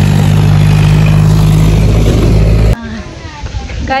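Tractor engine running steadily with a loud, even low hum, cutting off abruptly about three-quarters of the way through.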